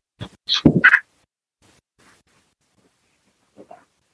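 A person laughing briefly in a few short bursts, all within about the first second.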